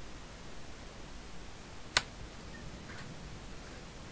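Steady background hiss with a single sharp click about halfway through, and a fainter tick shortly after.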